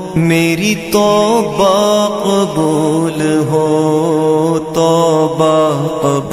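Devotional male vocals chanting: a melodic sung line over a steady held vocal drone, an interlude of an Urdu naat.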